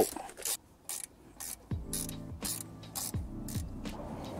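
A ratcheting spanner clicking in short strokes as it loosens a 10 mm bolt, with background music with a beat underneath.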